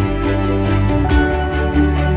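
Background music with a steady beat and sustained instrumental notes.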